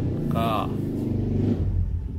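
A man's voice says one short word, over a steady low rumble.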